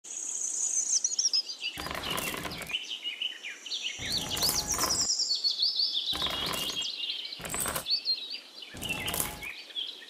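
Small birds chirping and twittering steadily, with five short bursts of small pebbles rattling and clattering as they are poured from a little tin bucket.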